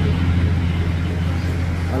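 Steady low hum of an engine running at idle, with faint voices in the background.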